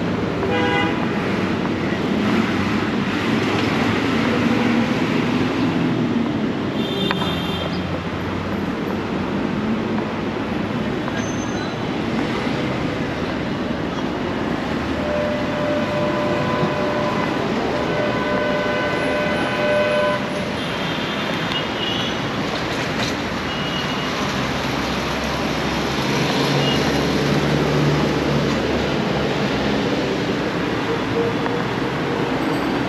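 Road traffic with buses going by, and vehicle horns honking: short blasts near the start and a few more later, with one long held horn in the middle.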